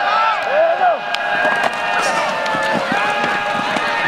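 Crowd of spectators, many voices overlapping at once, shouting and cheering steadily through the play, with a few sharp knocks.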